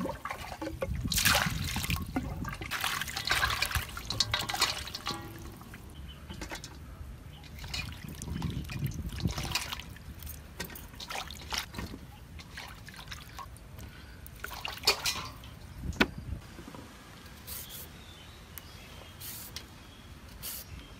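Water sloshing and splashing in a stainless steel bowl as vegetables (cherry tomatoes, yardlong beans) are washed by hand, loudest in the first few seconds and again about halfway through. The rest is quieter, with scattered clicks and one sharp knock.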